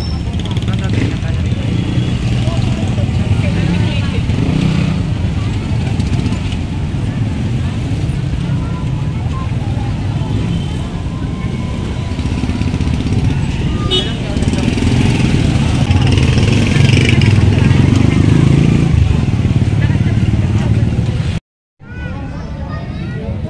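Busy street crowd: many people talking around the microphone, with motorcycle and traffic engines running and passing. The sound breaks off for a moment near the end.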